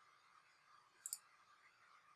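A quick double click of a computer mouse about a second in, otherwise near silence.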